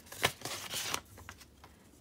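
Paper rustling as a small paper envelope is opened by hand and its contents slid out: a short rustle with a click in the first second, then faint light handling sounds.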